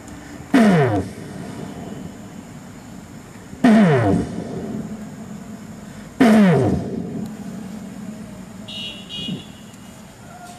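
A deep voice gives three loud, short shouts about three seconds apart, each falling steeply in pitch, in the prayer's ritual cries after a count of three. A steady low hum runs underneath.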